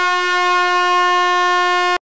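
Handheld canned air horn giving one long, loud, steady blast that cuts off suddenly at the end.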